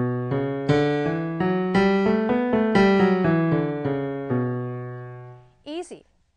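Digital keyboard with a piano sound playing a B natural minor scale note by note over a held low note. The notes fade out near the end.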